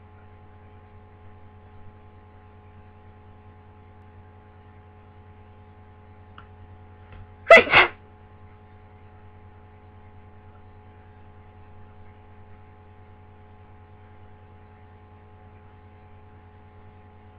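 One sneeze from a person with a head cold, about halfway through, coming in two quick bursts. A steady low hum runs under it.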